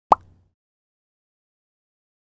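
A single short, sharp pop sound effect from an animated end screen, with a brief tone that dies away within half a second.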